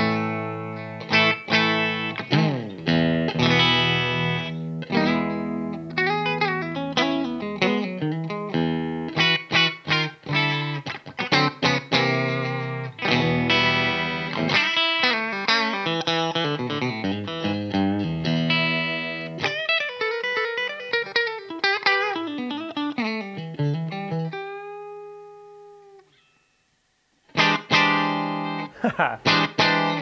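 A Fender American Vintage II 1961 Stratocaster played with a clean tone on its bridge pickup, which is not ice-picky, through a Blackstar amp. It plays a stream of picked single-note lines and chords with bends, ending on a held note that wavers in pitch and dies away. After a brief pause, a few more quick notes follow.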